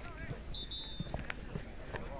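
Pitch-side sound of a football match: distant shouts and talk from players and onlookers, a short high whistle about half a second in, and a few sharp knocks.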